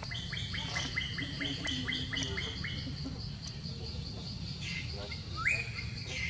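Wild birds calling: a quick run of about ten short falling chirps over the first three seconds, then a single rising whistled note near the end, over a steady pulsing high-pitched tone and a low rumble.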